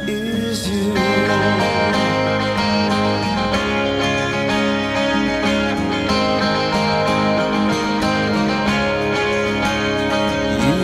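Background music: an instrumental stretch of a song between its sung lines.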